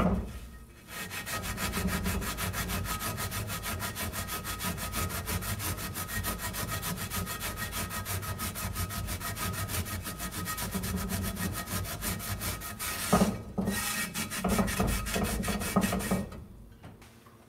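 Coarse salt being scrubbed around a cast iron skillet with a sponge: a rapid, steady back-and-forth gritty scraping, with a short break about three seconds before the end.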